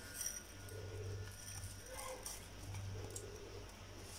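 Faint, soft sounds of a silicone spatula starting to fold chocolate sprinkles into a whipped chocolate cream mixture in a glass bowl, over a low steady hum.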